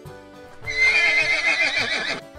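A horse whinnying once, starting about half a second in and lasting about a second and a half, loud over light background music.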